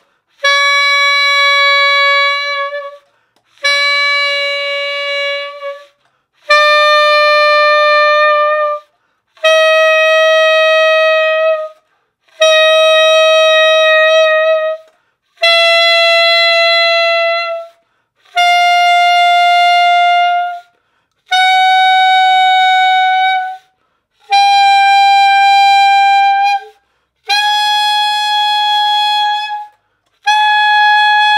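Alto saxophone playing single long notes in its upper register, octave key pressed. Each note is held about two and a half seconds with a short break between, and the pitch climbs gradually from note to note.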